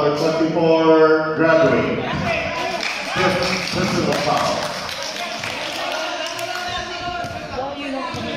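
Several people talking and calling out in a large gym hall. A raised voice holds one long call in the first second and a half, then overlapping chatter follows.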